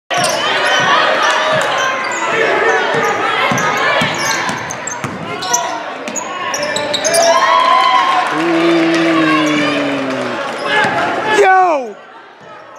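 Basketball being dribbled on a hardwood gym floor, with spectators' voices and shouts throughout. A long held shout rises over it about eight seconds in, and the sound drops away suddenly near the end.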